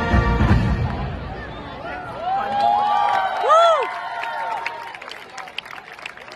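Marching band's brass and drums ending a piece on a loud held chord that dies away about a second in. The crowd in the stands follows with whoops and cheers, then scattered clapping near the end.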